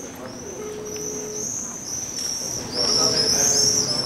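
Small birds chirping continuously in quick, high, repeated calls. A short steady low tone starts about half a second in and lasts just under a second.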